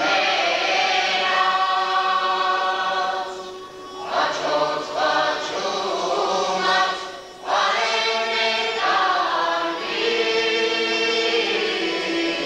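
Armenian folk ensemble singing as a choir, in long held phrases with brief breaks about four and seven and a half seconds in, over a steady held low note.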